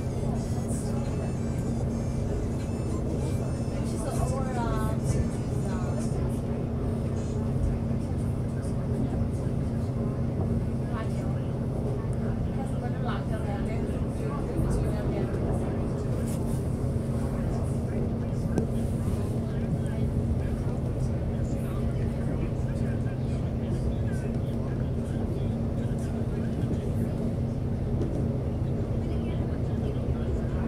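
Alstom X'Trapolis electric suburban train running, a steady low hum and rumble heard from inside the carriage.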